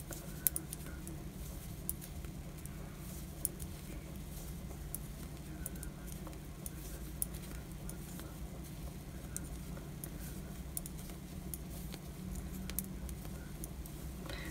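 Knitting needles clicking and tapping faintly and irregularly as a row of stitches is purled, over a steady low hum.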